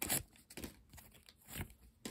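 Foil wrapper of a Match Attax trading-card pack being torn open and crinkled, in a few short bursts with quiet between.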